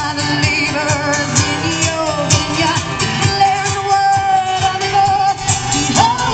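Live music through outdoor PA speakers: a woman singing into a microphone over guitar and a steady beat.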